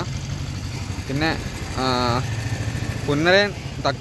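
A vehicle engine idling steadily with a low, even pulse, under a few short snatches of voice.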